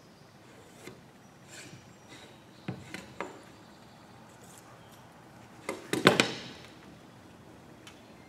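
Light knocks and clacks of a metal ruler and a small square of MDF being handled and set down on an MDF box top, a few single taps then a short cluster of sharper clacks about six seconds in. A brief scratch of pencil on MDF about a second and a half in.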